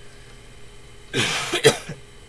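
A person coughing about a second in: a short, harsh burst that ends in a sharper second push. Before it, only a faint steady hum.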